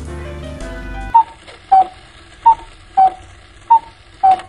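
Background music for about a second, then a two-tone chime sound effect: five short, loud tones alternating high and low, about one and a half a second.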